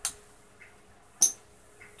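Casino chips clicking as they are set onto a stack: two sharp clicks about a second and a quarter apart, the second louder.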